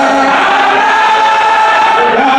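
Many voices chanting a Sufi zikr together, holding long notes that step up and down in a slow, steady melody.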